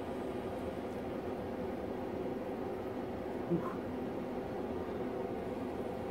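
A steady machine hum at an even level, with a brief grunt from a man's voice about halfway through.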